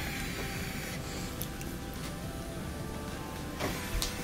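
Cordless drill-driver running steadily with a motor whine as it backs out screws from sheet-metal panels, with a click near each end.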